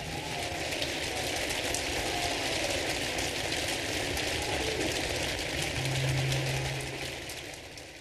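Large concert-hall audience applauding steadily after the song ends, the clapping fading out near the end.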